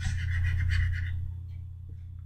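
A steady low hum picked up by the microphone, with a brief scratchy rustling noise over it in the first second or so that fades away.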